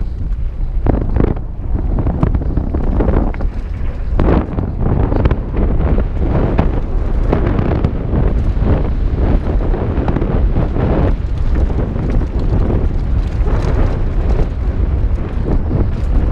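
Wind buffeting a helmet-mounted GoPro's microphone during a fast mountain-bike descent on a rough dirt trail: a loud, continuous low rumble broken by frequent irregular knocks and rattles from the bike and tyres over the ground.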